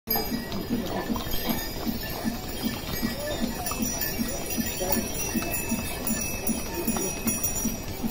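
Pack mules walking on a stone path, the bells on their harness jingling in a steady rhythm, about three times a second, along with the clip-clop of hooves.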